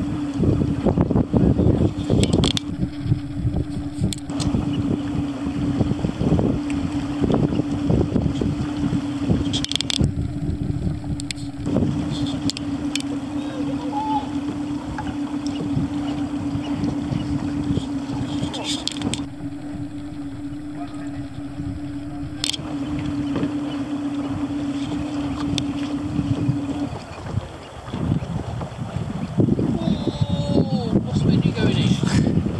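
A boat's motor running steadily with a constant hum that stops about 27 seconds in, over wind buffeting the microphone.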